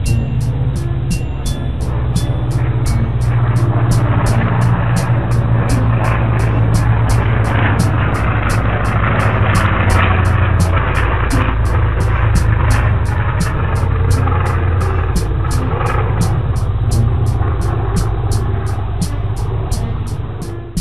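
Propeller airplane engine sound effect, a steady drone that grows louder over the first few seconds, with a high ticking of about three beats a second over it.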